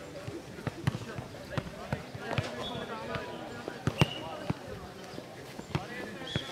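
Nohejbal (futnet) ball being kicked and bouncing on clay courts: a series of sharp thuds at irregular intervals, the loudest about four seconds in, with voices of players and spectators in the background.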